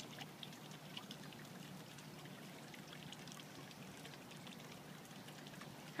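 Faint, steady outdoor background noise with a few faint light ticks and no distinct event.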